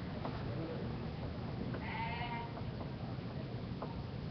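A short wavering vocal sound, most likely a person's voice, about two seconds in, over steady low room noise with a few faint clicks.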